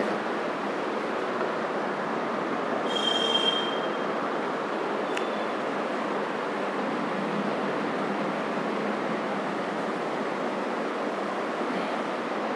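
A steady, even noise with no speech, with a brief high squeal about three seconds in.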